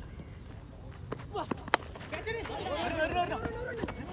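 A cricket bat hitting the ball once with a single sharp crack, followed by men's excited shouts, including 'wow, catch'.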